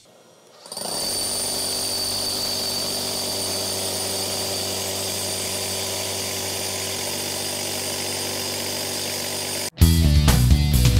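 Makita GRH05 (HR005) cordless SDS-Max rotary hammer drilling a one-inch hole. It starts about a second in, runs at a steady level with a steady whine, and cuts off abruptly near the end.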